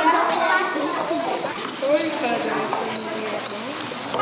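Children's voices talking and calling over one another, a busy overlapping chatter.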